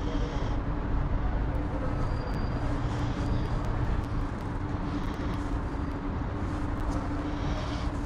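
Steady outdoor city background: a low traffic rumble with a steady hum under it, and a few faint clicks from a plastic ink bottle and marker cap being handled.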